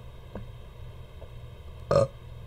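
A pause in speech filled by steady electrical hum from the recording setup, with a faint click about a third of a second in and a short, sharp burst of noise just before the end.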